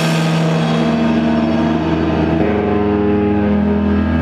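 Distorted electric guitars and bass holding loud, ringing notes once the drums stop, the pitch shifting a couple of times: the droning close of a live post-hardcore song through guitar amps.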